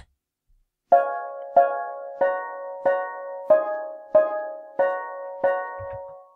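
Sibelius notation-software playback of a reggae skank chord part: eight short sampled chords, one about every 0.65 s (a steady 93 bpm), each struck and decaying, starting about a second in. It is played back with live playback off, so exactly as written without extra MIDI expression.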